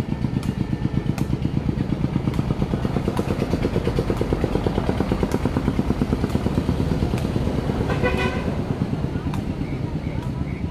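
A small engine running steadily with a rapid, even pulsing, joined by a few scattered sharp knocks.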